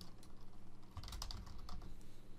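Typing on a computer keyboard: an irregular run of light key clicks.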